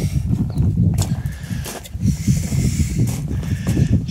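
Low rumble of wind and handling on the microphone, with a few sharp clicks and knocks as the metal debris tray of a carpet scrubber is handled and tilted.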